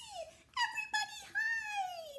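A woman's voice squeaking in a high, pinched piglet voice, acting the smallest pig's squeal of alarm. The pitch slides downward on each squeal.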